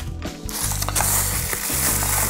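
Bubble wrap and a plastic bag crinkling as a wrapped object is handled, a dense crackle starting about half a second in.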